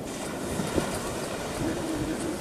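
Steady wind noise on the microphone over the wash of surf on a sandy beach.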